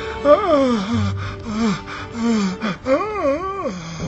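A wordless voice wails in long, gliding notes that waver near the end, over a steady low drone, with gasping breaths.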